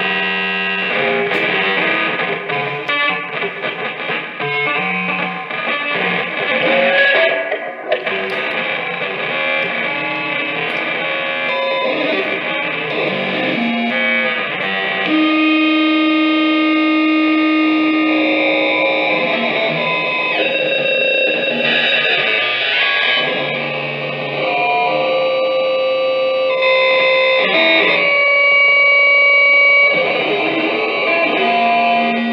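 Prepared electric guitar with a stick wedged between its strings, played through an amplifier in free improvisation: a dense, rapidly fluttering, stuttering texture for the first half, then from about halfway long held tones layered over one another.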